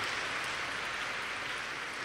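A large audience applauding together: a steady, even clatter of many hands.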